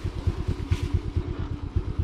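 Small motorbike engine idling steadily, with an even, rapid low putter.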